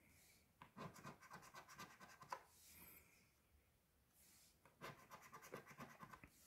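Coin scratching the coating off a scratch-off lottery ticket: two faint runs of quick scraping strokes, about a second in and again near the end.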